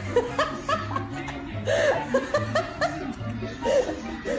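A person laughing in short repeated chuckles over background music with a steady bass line.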